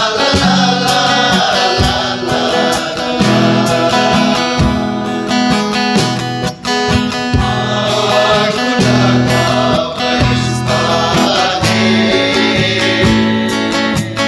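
A men's vocal group singing together, accompanied by a strummed acoustic guitar.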